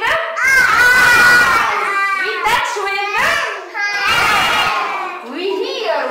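Several young children's voices calling out at once, overlapping in eager answers.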